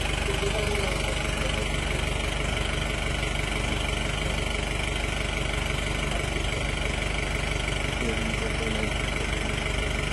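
A motor running steadily with a low, even drone, with faint voices about half a second in and again near the end.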